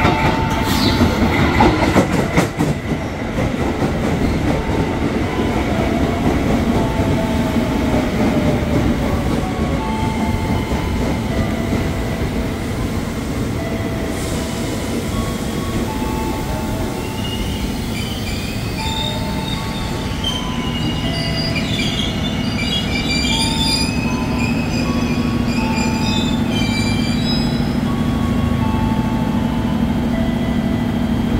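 JR 205-series electric commuter train running into the platform and braking to a stop, its wheels rumbling on the rails with clicks near the start. High-pitched brake and wheel squeal sets in during the second half as it slows.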